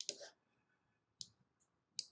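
Computer mouse clicking three times, short sharp clicks about a second apart, as lines are drawn on a trading chart.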